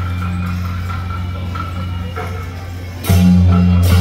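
Beiguan procession music led by a large gong: a low, sustained ring, with a hard strike about three seconds in that makes it much louder, followed by a sharp clash near the end.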